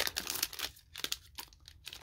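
Foil wrapper of a Pokémon booster pack crinkling and tearing as it is pulled open by hand, with a sharp crackle right at the start followed by lighter, irregular crinkles as the wrapper is handled.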